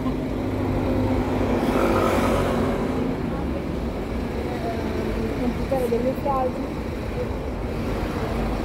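Street traffic: a vehicle engine running with a steady low hum for the first few seconds, while a vehicle passes about two seconds in. Faint voices follow.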